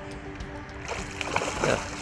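Background music with sustained tones, and a hooked trout splashing at the surface about halfway through.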